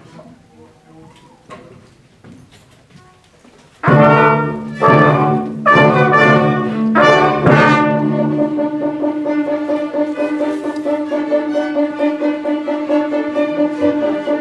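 Orchestra with brass and strings comes in about four seconds in with a run of loud, separately struck accented chords, then plays on in sustained held notes. Before it enters, only quiet room sound.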